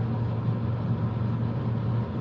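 Steady low hum over a faint even hiss, unchanging throughout.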